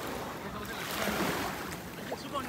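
Ocean surf washing onto a beach, a wave swelling and fading about a second in.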